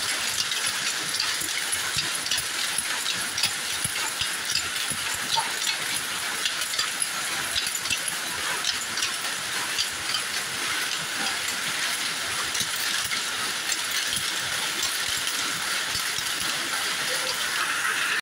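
Power looms running, a dense, steady clatter of many quick mechanical strikes over a loud hiss.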